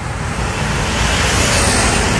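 Loud, steady road traffic noise: a continuous roar of passing vehicles with no distinct events.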